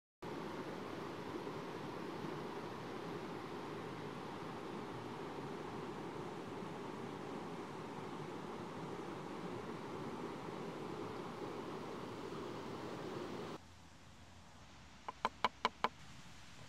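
Steady rushing noise of a flowing stream that cuts off suddenly a couple of seconds before the end, leaving quieter background. Near the end, a quick run of about six sharp clicks.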